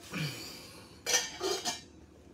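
Handling noise: a brief scrape with a falling pitch, then, a little over a second in, three sharp clinks and knocks in quick succession.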